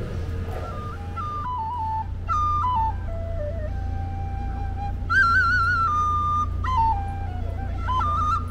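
A flute played solo: a slow melody, one note at a time, starting about a second in, with wavering ornaments on the notes around the middle. A steady low hum runs underneath.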